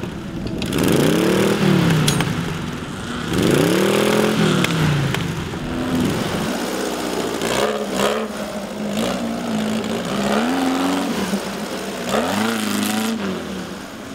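Off-road buggy engine revving up and easing off again about five times, its pitch rising and falling with each burst of throttle as the buggy drives over rough dirt.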